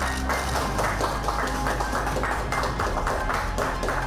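A small group clapping by hand at a button-press opening, with background news music underneath.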